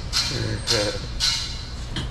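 A man laughing in about three short, breathy bursts, over a steady low background rumble.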